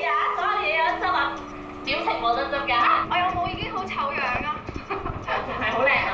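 Women's voices talking in Cantonese over a held background-music note that steps down in pitch during the first few seconds.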